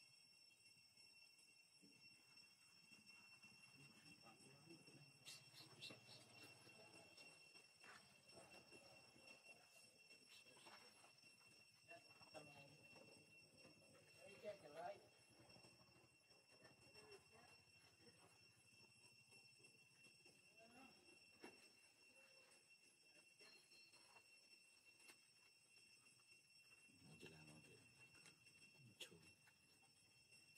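Near silence: a faint, steady high-pitched whine, with a few faint clicks and indistinct voice-like sounds now and then.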